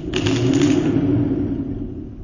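A car alternator spun by hand with a sharp pull on a thread wound round its pulley. There is a quick rasp of the cord, then the rotor whirs and hums, fading away over about a second and a half as it spins down.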